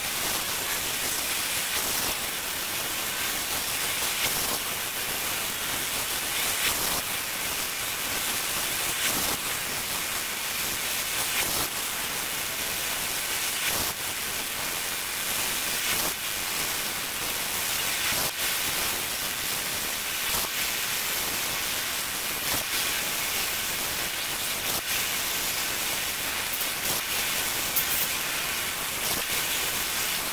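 Laser engraving machine at work on an acrylic block: a steady hiss with faint, scattered ticks.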